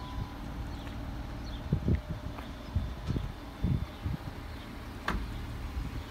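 Power liftgate of a 2015 Jeep Cherokee Trailhawk closing automatically after its push button is pressed, ending in a sharp latching click about five seconds in. Irregular low thumps and rumbles of wind and handling on the microphone.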